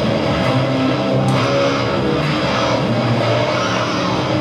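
Live heavy rock band playing loudly, with electric guitar and bass guitar running steadily through amplifiers.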